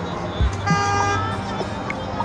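A car horn sounds once, a short honk of about half a second roughly two-thirds of a second in, over steady background music and street traffic.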